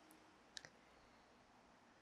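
Near silence: room tone, with two faint short clicks about half a second in.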